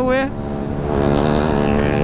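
KTM Duke motorcycle engine running steadily at highway speed, with wind rushing over the microphone.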